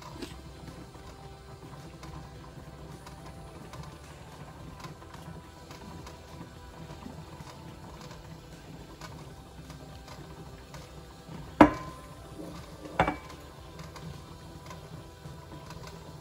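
Faint steady background music over a low hum while thick sourdough starter is poured from a glass jar into a glass measuring cup. Two sharp glass knocks, the jar against the cup, come about two-thirds of the way in and again a second and a half later; the second rings briefly.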